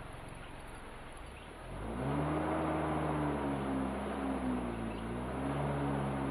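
The vehicle's engine, heard from inside the cab, runs low and steady while it rolls, then picks up under throttle about two seconds in. The engine note rises and holds, sags briefly past the middle, and climbs again.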